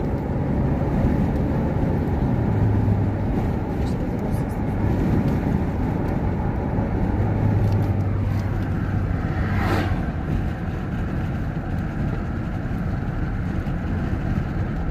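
Steady road and engine noise inside a car's cabin while cruising at about 80 km/h on a highway. About ten seconds in, a brief whoosh as an oncoming vehicle passes.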